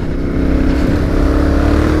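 Yamaha Ténéré adventure motorcycle engine running steadily under way on a gravel track, its pitch rising slightly, over a steady rush of wind and road noise picked up by a helmet-mounted camera.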